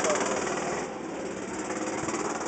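A small engine running steadily with a fast, even pulse.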